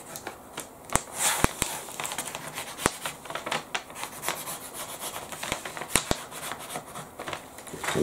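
Pencil drawing on tracing paper laid over fabric: scratchy rubbing strokes broken by short sharp ticks of the pencil tip.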